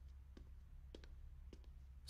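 Near silence with a few faint, sharp clicks, roughly half a second apart, over a low hum.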